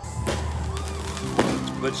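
Fireworks going off, loud: sharp bangs about a quarter second in and again near a second and a half, over music and voices.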